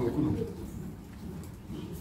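A man's voice speaks a short word, then only low, even room sound remains for the rest of the moment.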